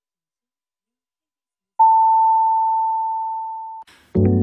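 Radio station's top-of-the-hour time signal: silence, then about two seconds in a single long, steady beep that fades slowly and cuts off just before the end.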